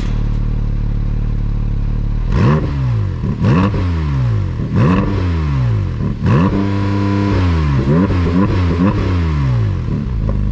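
Porsche 718 Cayman GT4 RS's 4.0-litre naturally aspirated flat-six idling, then revved with the car standing still: four quick throttle blips, each rising sharply and falling away over about a second. After that comes a rev held briefly and a few shorter blips, and then it settles back to idle.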